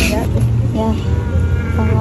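Short bits of speech over a steady low background rumble.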